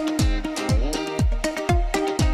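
Upbeat background music with a deep, booming kick drum on every beat, about two beats a second, under bright pitched melody notes.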